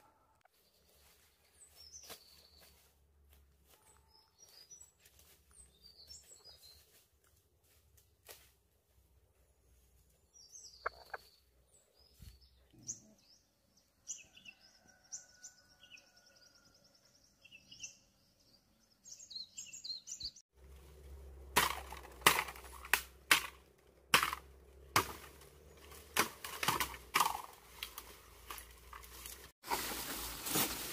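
Small birds chirping and whistling in the forest canopy, faint at first and clearer about halfway in. From about two-thirds in, a rapid run of sharp, loud woody cracks and knocks takes over as a green bamboo culm is gripped, pulled down and broken.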